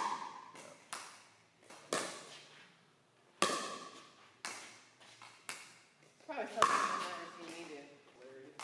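Pickleball paddles striking balls on serves, with the balls landing on the court: a series of about seven sharp pops roughly a second apart, each with a short echo in the indoor court.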